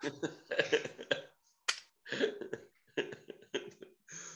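A man laughing in short, breathy bursts between attempts at a word, with one sharp click partway through.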